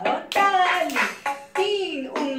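Soft finger claps, fingers tapped against the palm, in time with a woman singing a children's clapping song.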